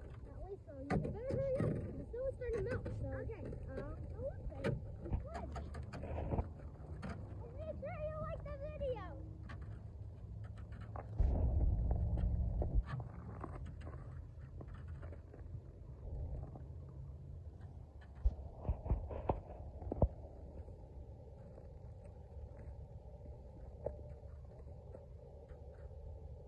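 Children's voices calling and shouting, with high gliding calls around 8–9 seconds in. About 11 seconds in comes a low rumble lasting about two seconds, the loudest sound here, and a few sharp knocks follow around 18–20 seconds in before it goes faint.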